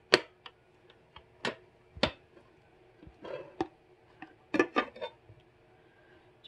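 Glass slow-cooker lids with metal rims clinking and knocking against the crocks as they are handled and lifted: a few sharp clicks, one just after the start, two about 1.5 and 2 seconds in, and a short cluster between about 3.5 and 5 seconds.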